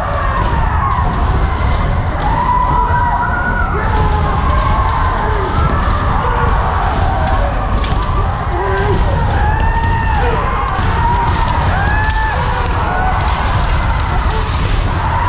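Many kendo practitioners shouting kiai at once, in overlapping drawn-out yells that rise and fall, with the sharp knocks of bamboo shinai strikes and stamping footwork on the wooden floor mixed in.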